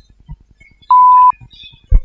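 Censor bleep: a single steady 1 kHz beep lasting under half a second, masking a swear word. A short low thump follows just before the end.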